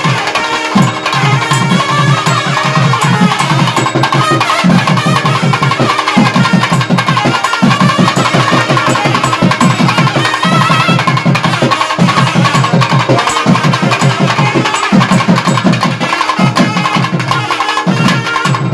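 Nadaswaram and thavil ensemble (periya melam) playing: two nadaswarams carry a continuous wavering melody over fast, dense thavil drumming that breaks off briefly every few seconds between phrases.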